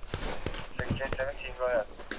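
Quick, regular pats of a hand on an infant's back, about three a second, meant to get the unresponsive baby breathing, with a man's quiet coaxing voice between them over a low rumble.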